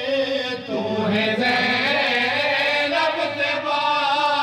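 A noha, a mourning lament, chanted by a male voice in a continuous, wavering melodic line.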